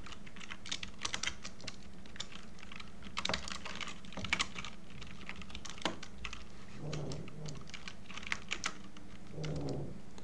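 Typing on a computer keyboard: irregular runs of keystrokes, with a few louder strikes about four seconds in.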